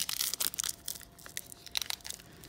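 Shiny foil wrapper of a 2018 Donruss Football card pack crinkling and tearing as it is handled and opened: a run of sharp crackles, loudest right at the start and again near the end.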